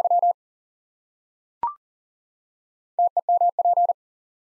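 Morse code sent at 40 wpm as a single tone of about 700 Hz keyed in quick dots and dashes. The repeat of "very" ends in the first instant, a short beep that steps slightly up in pitch sounds as the courtesy tone about a second and a half in, and the next element, the code for "temperature", is keyed from about three seconds in.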